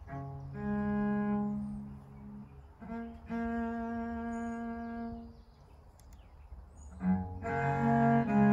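Solo cello played with the bow: a slow melody of long held notes, with a brief lull a little past the middle, then louder notes that change more quickly near the end.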